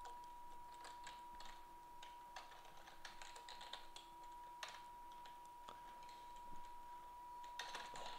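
Faint, scattered clicks of computer keyboard keys, a few seconds apart, over a faint steady high-pitched whine.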